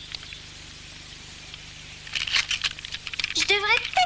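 Quiet room tone for about two seconds, then short crisp clicks or hissing sounds, and a voice starts speaking near the end.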